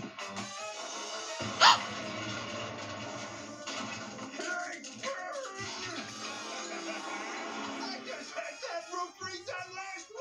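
Cartoon soundtrack played through a TV speaker: music, with one short, loud bang about a second and a half in, a cartoon explosion sound effect.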